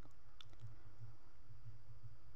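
Tailoring scissors snipping small cuts into the seam allowance of a fabric neckline, heard as a few faint, sharp clicks.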